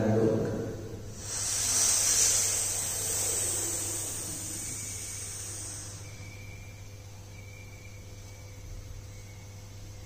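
A long hissing in-breath drawn through lips pursed like a crow's beak (kaki mudra pranayama), starting about a second in and tapering off over about five seconds. A faint steady low hum lies under it.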